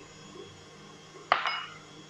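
A single sharp clink of a hard kitchen object, a utensil or glass knocked or set down on the work table, with a brief ring, a little past halfway through; otherwise quiet.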